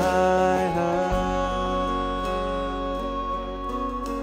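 Live band music with acoustic guitar, electric bass and drums. A male voice holds a sung note that ends about a second in, and the band plays on with sustained tones.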